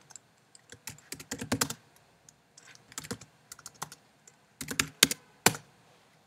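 Computer keyboard keys clicking in short irregular bursts as a short terminal command is typed, with a few louder key strikes near the end.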